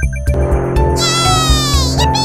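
A cartoon buzzing sound effect over a music bed with a steady bass beat. The buzz enters about halfway through and slowly falls in pitch.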